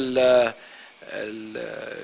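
A man's voice: a drawn-out syllable at the start, then a soft, low held hesitation sound while he searches for a word.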